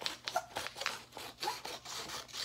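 Scissors cutting along the edge of a sheet of construction paper: a quick run of rasping snips, about four a second.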